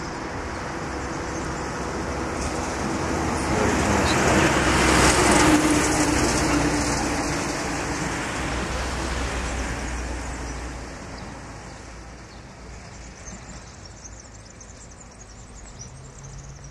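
A motor vehicle passing on a nearby road: its noise swells to a peak about five seconds in, then fades away over the next several seconds.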